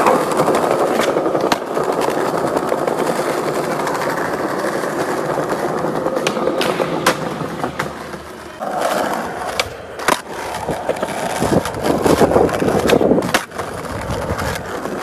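Skateboard wheels rolling over stone paving and then asphalt, a steady rumble. Several sharp clacks of the board against the ground are heard.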